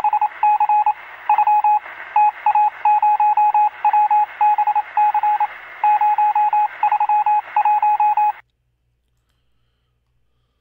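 Morse code: a single beeping tone keyed in short dots and longer dashes over a hiss of radio static, sounding as if heard through a radio receiver. It cuts off suddenly about eight and a half seconds in.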